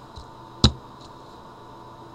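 A single sharp click about two-thirds of a second in, with fainter ticks shortly before and after it, over a faint steady high-pitched tone.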